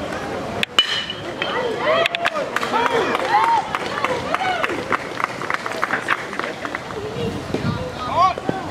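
A bat striking a baseball with one sharp crack less than a second in, followed by spectators and players shouting and yelling encouragement as the hit is played.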